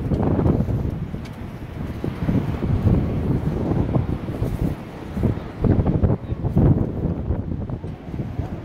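Wind buffeting the microphone in uneven gusts, a loud, rumbling low roar that rises and falls.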